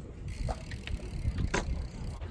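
BMX bike rolling across concrete, with a few sharp clicks about half a second and a second and a half in, over a steady low rumble.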